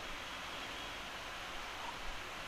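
Steady, even background hiss with no other sound: the recording's microphone noise floor during a pause in the narration.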